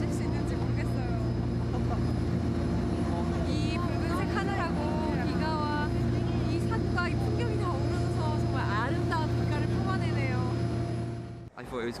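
Amphibious tour boat's engine running with a steady drone, under a woman's excited talking.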